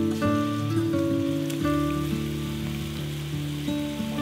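Chunks of raw meat sizzling in hot oil in a pot as they are laid in to brown, a steady crackling hiss. Gentle acoustic guitar music plays over it and is the louder sound.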